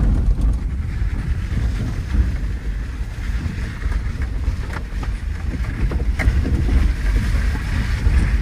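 Cabin noise of a 1995 Subaru Legacy driving slowly on a rough dirt fire road: a steady low rumble of tyres and engine, with a few light knocks from the road surface.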